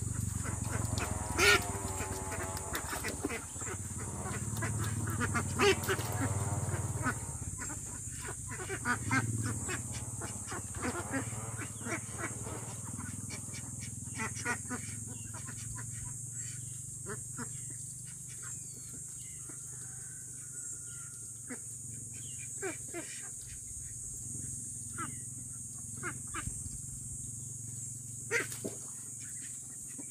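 Young Itik Pinas ducks calling, mostly in the first several seconds, then only now and then, over a steady high-pitched hiss.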